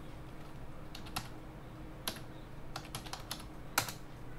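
Computer keyboard keystrokes: a few scattered key presses, then a quick run of several, with the loudest keystroke near the end, as a short command is typed that opens the Registry Editor.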